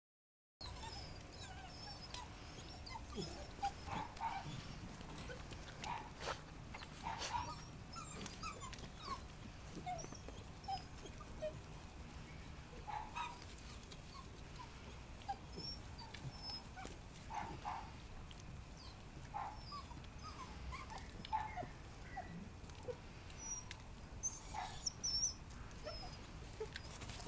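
A litter of young hound puppies whimpering and giving short, high squeaks and yelps, scattered throughout.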